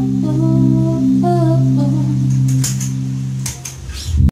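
Electric bass holding low notes under a girl's wordless vocal line, which fades out about two seconds in. A few sharp clicks follow, and the bass stops about three and a half seconds in.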